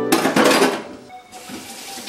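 Kitchen tap running into a stainless steel sink as a fish is rinsed under it. The water is loudest in the first second, then settles to a softer, steady run.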